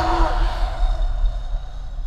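A woman gasping for breath while a plastic bag is held over her face to suffocate her, over a deep, steady rumble. The gasps fade toward the end.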